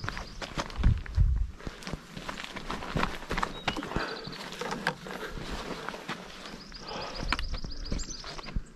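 Footsteps scuffing and crunching on rock and dry brush, with irregular clicks and a few low thumps around a second in. A faint, high, rapidly pulsing trill sounds in the background near the end.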